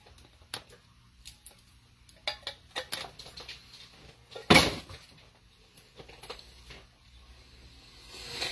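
Scattered clinks and knocks of a metal can and a spoon against a crock-pot as kidney beans are knocked and scraped out of the can, with one much louder knock about halfway through.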